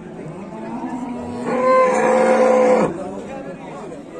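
A calf mooing: one long call held on a steady pitch, loudest for about a second and a half in the middle before breaking off.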